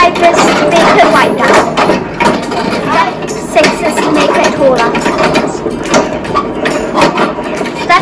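People's voices talking throughout, over the low running of an electric pottery wheel as wet clay is shaped on it.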